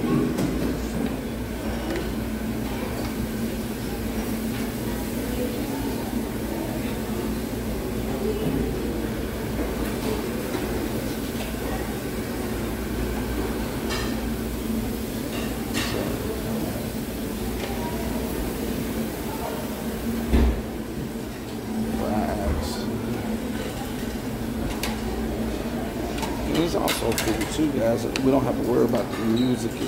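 Restaurant dining-room din: indistinct background voices over a steady low hum, with a few light clicks and knocks and one sharper thump about two-thirds of the way through.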